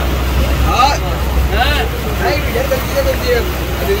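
Men's voices calling out over the steady low drone of a fishing boat's engine.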